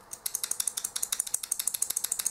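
The metal push-button fire switch on a homemade wooden box mod clicked over and over, a fast run of sharp clicks at about ten a second.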